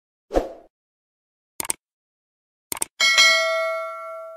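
Subscribe-button animation sound effects: a short pop, a click about one and a half seconds in, a quick double click near three seconds, then a bright notification-bell ding that rings on and fades.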